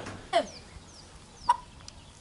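Chickens being held in the hands, giving a short falling squawk near the start, then a few faint high chirps and a sharp click about one and a half seconds in.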